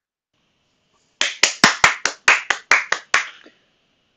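A single person clapping about ten times in a quick, even rhythm, starting about a second in: applause at the end of a talk.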